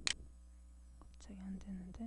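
Computer mouse clicking: a sharp double click right at the start, then a low muttered voice from a little past one second in until near the end, over a steady low electrical hum.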